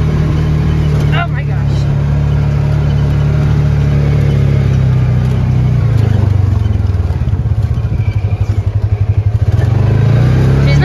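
Engine of a side-by-side UTV running as it drives, heard from inside the cab. The engine note drops a little about halfway through, then wavers rapidly in loudness for the last few seconds.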